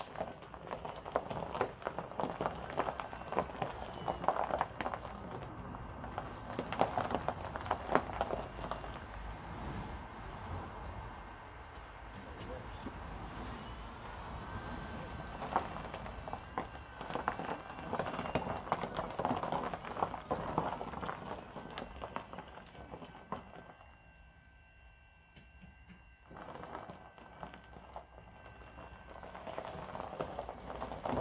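Tyres crunching and popping over loose gravel as a Mitsubishi L200 pickup converted to electric drive rolls slowly along, with no combustion engine running. The crunching eases for a moment near the end.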